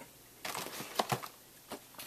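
Packaged action figures in plastic blister boxes being handled: a short stretch of light rustling with a few sharp clicks about a second in.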